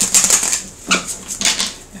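A deck of tarot cards being riffle-shuffled: a rapid flutter of cards in the first half-second, then two shorter bursts of card riffling.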